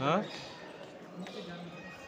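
A man's short "haan" (yes), followed by faint voices of other people talking.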